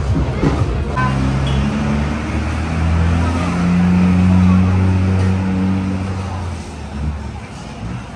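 Road traffic: a motor vehicle's engine hum rises, is loudest around the middle, and fades away, as a vehicle passes on a busy town street.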